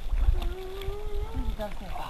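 A voice holding one long, slightly rising note for about a second, then a few short lower sounds, over a steady low rumble.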